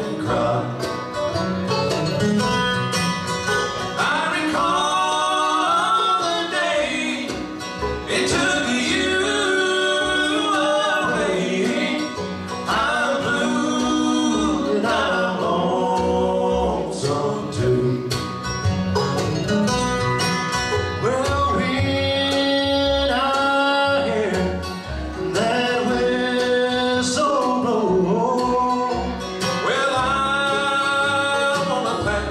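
Bluegrass band playing live, with sung vocals over banjo, mandolin, acoustic guitar and upright bass.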